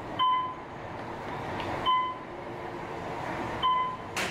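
An electronic beep sounds three times at even intervals, each a short, clear tone, over steady background noise.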